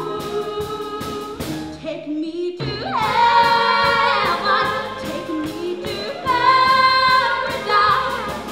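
A chorus of girls' voices sings a musical-theatre number with live band accompaniment and a steady beat. There is a short break about two seconds in, then the voices come back loud on long held chords, twice.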